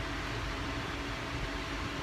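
Steady background hum and hiss from an unseen machine or distant traffic, even throughout, with a faint constant tone in it.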